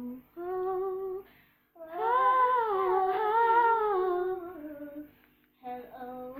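A female voice singing wordless, unaccompanied notes: a short held note, then a long louder one that wavers and slides down at its end, and another starting near the end.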